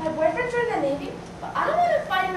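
A woman's high voice making wordless sounds that slide up and down in pitch, ending in one arched note that rises then falls.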